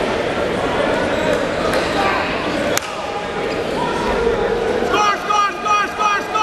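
Wrestlers scrambling on a gym mat over a hubbub of voices from spectators and coaches. A single sharp smack comes almost three seconds in, and near the end there is a quick run of short high squeaks from wrestling shoes on the mat as the pair go down.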